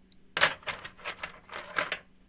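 Small stony meteorite fragments clattering against one another and a metal tray as a hand rummages through them: a run of sharp knocks starting about half a second in and lasting about a second and a half.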